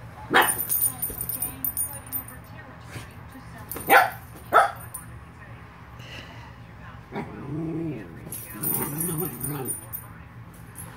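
Two dogs play-fighting: a sharp bark about a third of a second in and two more around four seconds, then low play growling through the last three seconds, with collar tags jingling during the scuffles.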